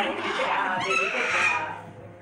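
A parrot squawking: one harsh call about a second in, lasting under a second, over a background of audience noise.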